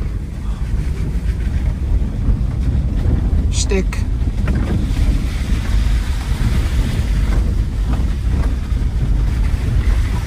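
Steady low rumble of a 1995 Subaru Legacy driving over a rough dirt fire road, heard from inside the cabin: tyres on dirt and gravel with the engine beneath. A brief vocal sound comes about four seconds in.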